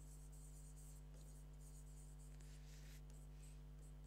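Faint scratching of a pen writing words on a board, strongest about two and a half to three seconds in, over a steady low hum.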